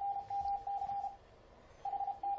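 Morse code (CW) sent from FLDigi, heard as the Icom IC-7300 transceiver's sidetone: a single mid-pitched tone keyed on and off in dots and dashes. It pauses a little past the first second and starts keying again near the end.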